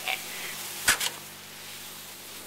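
A sharp knock about a second in, followed at once by a lighter one, over a faint steady hiss: the paddle knocking against the smoker's cooking grate as a pork butt is scooped up.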